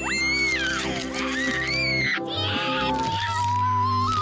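Background music with steady bass notes under a cartoon character's cat-like vocal cries: two high yowls that glide up and fall back, then a long, slowly rising howl from a furry, dog-like cartoon creature.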